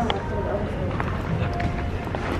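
Outdoor street ambience through a handheld phone's microphone: a steady low rumble with handling noise and faint voices in the background.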